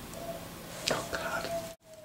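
Cardboard lid of an iPad box being slid up off its base: a light tap about a second in and a brief scuff, over a faint steady hum. The sound cuts out abruptly near the end.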